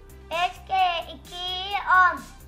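Upbeat children's background music with a steady repeating beat. Over it, a very high-pitched, cartoon-like child's voice sings out a times-table line (five times two, ten) in three short phrases, the last one held longest.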